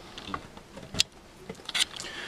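A few light clicks and knocks from lab equipment being handled off-camera, the sharpest about a second in.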